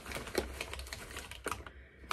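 Brown paper bag crinkling as it is handled and unrolled, a run of small irregular crackles that thins out near the end.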